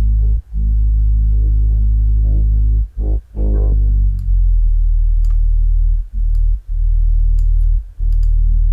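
The bass line of a mixed track, isolated in real time by a stem-separation plugin. Deep held bass notes with short breaks between them and a few faint clicks above.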